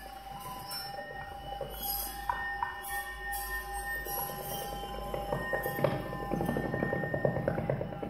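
Contemporary electroacoustic chamber music for flute, piano and tape: several steady held tones over a low drone, joined about halfway through by a dense stream of rapid grainy clicks that grows louder.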